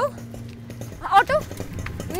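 Short vocal utterances from a person's voice: one brief call at the start and another about a second in, bending up and down in pitch.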